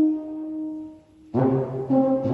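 Alphorn solo: a long held note fades away and rings out in a stone church, then after a brief pause a new phrase begins with a firm attack about a second and a half in.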